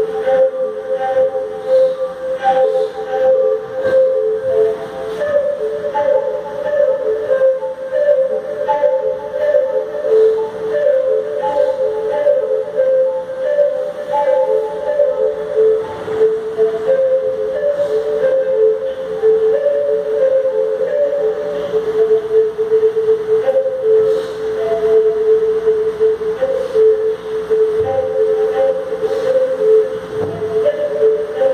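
Music: a wind instrument plays a slow melody of long held notes that step back and forth between a few close pitches.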